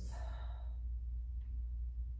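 A woman's audible breath at the start, breathy and fading out within about a second, then a steady low hum.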